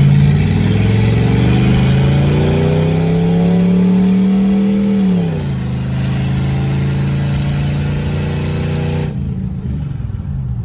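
Small-block Chevy 350 V8 heard from inside the Blazer's cab as it accelerates. The engine note climbs steadily for about five seconds, drops back, and then holds a steady note at cruise. By the owners' account it is running smoother now that the leaking rear intake gasket, blamed for a misfire, has been replaced.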